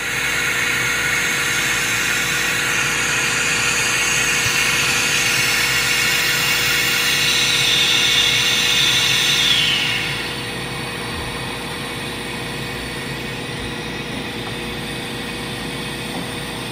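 Steady rushing hiss of air in a hyperbaric oxygen chamber, with a faint steady hum underneath. The hiss is louder for about the first ten seconds, then drops to a quieter steady level.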